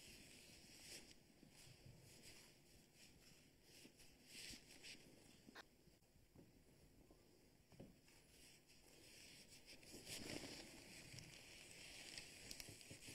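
Near silence, with faint rustling and a few soft clicks.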